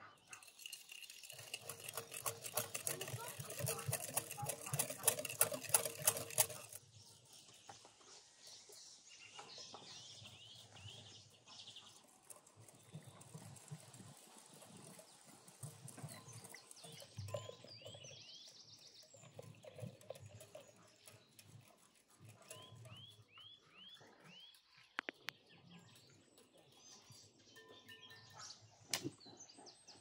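Wire whisk beating egg yolks and sugar in a glass bowl: fast, even strokes scraping and tapping against the glass for about six seconds, then stopping suddenly. After that, birds chirp now and then.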